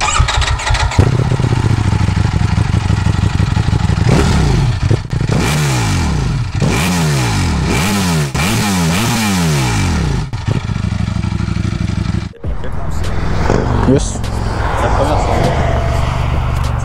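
Ducati Panigale V4 S's 1103 cc V4 engine idling, then revved in several quick throttle blips, its pitch rising and falling each time, before settling back to a steady idle.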